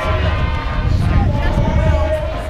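Uneven low rumble of wind and jostling on the microphone of a body-worn action camera carried by a running marathoner, with steady held tones sounding above it.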